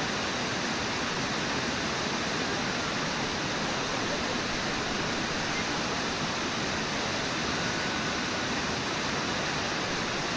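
Steady rush of river water, an even noise that does not change.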